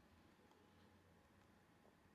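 Near silence: faint room tone between stretches of narration.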